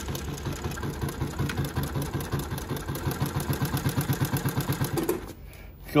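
JUKI LU-2860-7 double-needle walking-foot industrial lockstitch sewing machine stitching backward through denim to show its reverse stitch: a fast, even stitch rhythm that stops about five seconds in.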